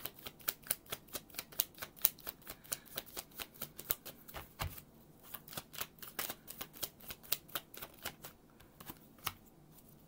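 A deck of tarot cards being shuffled overhand, a fast patter of soft card flicks at about four or five a second. After about five seconds the flicks grow sparse and stop shortly before the end.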